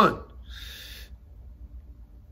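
A man's voice ends on a drawn-out rising word right at the start, then he takes a short breath about half a second in, followed by quiet room tone.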